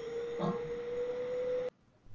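12 V DC cooling fan driven through a TIP120 power transistor, its motor giving a steady whine that slowly rises in pitch as the fan speed is turned up. It cuts off abruptly near the end.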